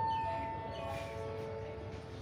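Station public-address chime: about four notes stepping down in pitch one after another, each held and ringing into the next, the last and lowest sustained longest. It closes a passenger announcement.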